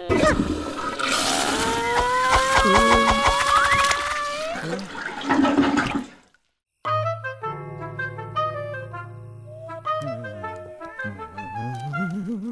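Cartoon toilet flush: a loud rush of water with rising tones over it for about six seconds, which cuts off suddenly. After a short silence, soft background music with steady sustained notes begins.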